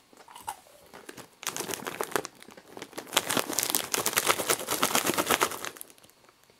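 Foil-lined snack bag of Lotte Koala's March biscuits crinkling as it is handled. There is a short spell of dense crinkling about a second and a half in, then a longer, louder one from about three seconds until just before the end.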